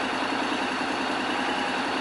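Honda X-ADV's 745 cc parallel-twin engine idling steadily.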